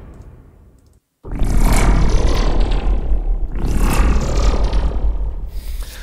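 Cinematic sound-effect samples played through the Backbone drum re-synthesiser plugin. The first is the fading tail of an impact hit. About a second in, a loud noisy effect with a deep sub-bass rumble starts, swells twice, and fades near the end.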